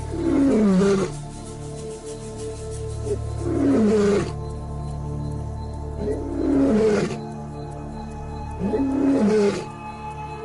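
Lion roaring four times, each call about a second long with a curving pitch, over steady background music.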